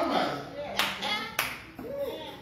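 Two sharp hand claps, a little over half a second apart.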